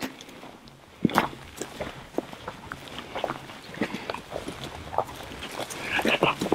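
Footsteps of several people walking over dry grass and forest litter: irregular crunching steps that start about a second in.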